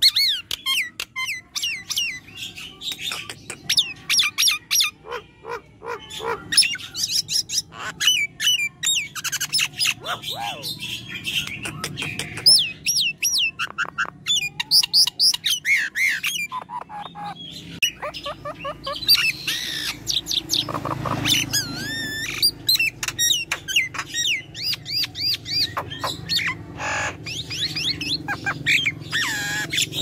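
Myna calling in a rapid, varied run of whistles, chatter and squawks, with a harsher, noisier stretch about twenty seconds in.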